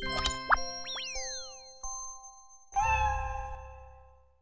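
Cartoon logo jingle: a quick run of springy sound effects with rising and falling pitch sweeps over bell-like held tones, then a fuller chord with a low rumble about three seconds in that fades out.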